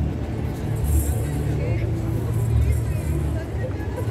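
Busy street ambience: a steady rumble of vehicle traffic with people's voices in the background, and no bells clearly ringing.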